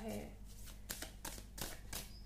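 A deck of tarot cards being handled and shuffled to draw a card, giving four short crisp snaps of card edges about a third of a second apart in the second half.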